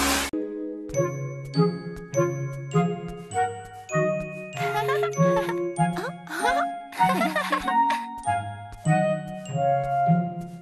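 Light, chiming jingle music with a bouncy bass line, introducing a segment. Two brief swooping sound effects come near the middle.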